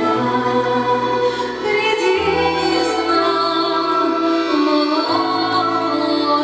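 A woman singing a song, accompanied by an ensemble of Russian folk instruments, over long held bass notes that change about every two to three seconds.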